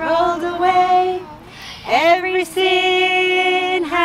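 Women and young children singing a Sunday-school action chorus together without instruments, in long held notes with a short break about a second and a half in.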